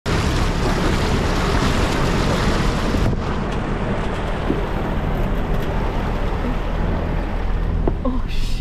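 Four-wheel drive's front tyre pushing through a shallow muddy creek crossing, water splashing and churning around the wheel over the steady low rumble of the engine, with wind buffeting the microphone. The splashing eases about three seconds in.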